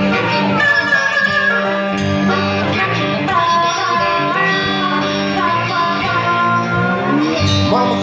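Live blues band playing: a harmonica leads with bent notes sliding in pitch, over electric bass guitar and drums.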